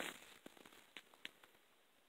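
Faint handling noises: a short rustle at the start, then a few light clicks and taps in the first second and a half, over quiet room tone.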